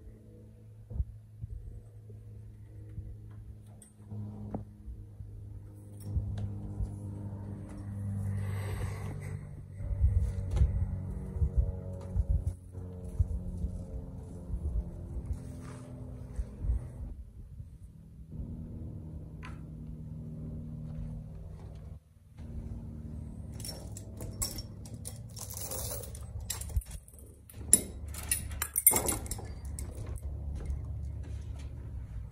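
Metal chains and mule harness hardware clinking and rattling, with scattered clicks and a busier spell of jingling in the last several seconds, over a steady low hum.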